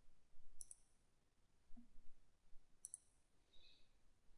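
Two faint computer mouse clicks about two seconds apart, over near-silent room tone.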